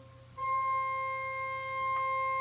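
A pipe organ's eight-foot diapason (principal) pipe sounding a single held C. The note comes in about half a second in and holds steady at one pitch.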